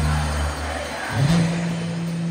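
Live band music in an arena, at a lull: a held low note that slides up slightly about a second in and holds, over a faint wash of hall noise.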